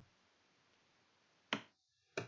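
Near silence broken by a single short, sharp click about one and a half seconds in.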